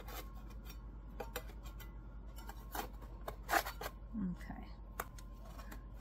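A metal spatula and crisp baked mandel bread slices scraping and knocking on a metal baking sheet as the slices are loosened and turned over: a handful of separate short scrapes and taps, the loudest about three and a half seconds in, over a steady low hum.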